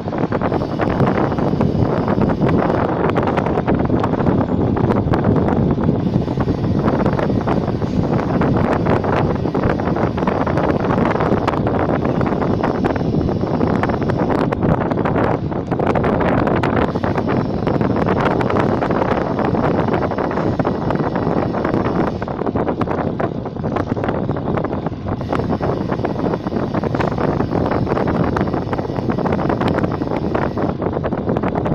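Wind rushing over the microphone of a camera moving at cycling speed alongside road cyclists: a loud, steady buffeting noise.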